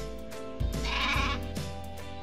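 A sheep bleating once, from about half a second in until just past a second, over background music with a steady beat.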